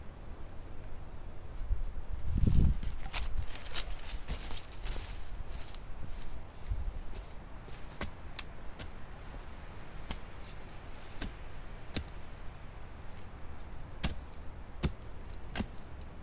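A pointed wooden digging stick jabbed repeatedly into rocky ground, giving irregular sharp knocks, roughly one every half second to second, as the point strikes soil and stone. A dull thump comes about two and a half seconds in.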